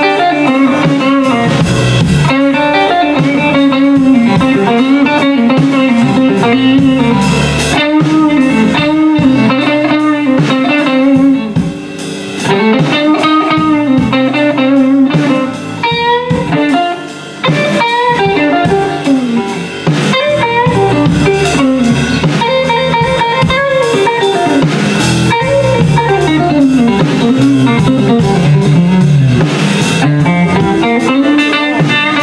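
Electric guitar playing an instrumental blues solo with many bent notes, over bass and drums. The playing drops quieter for a moment a few times in the middle.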